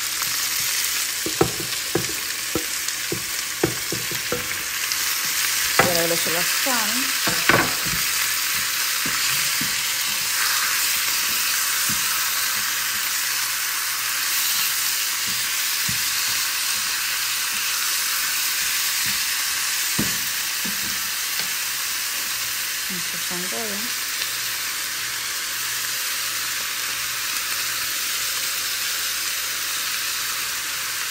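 Cod pieces and chopped onions and peppers frying in a nonstick pan, a steady sizzle throughout. Several short knocks from the board and spatula against the pan in the first eight seconds, and one more about twenty seconds in.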